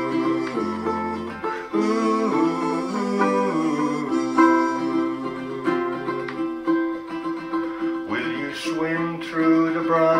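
Clearwater bowl-back baritone ukulele, tuned GCEA, playing a steady run of chords with a mellow tone in an instrumental passage between verses.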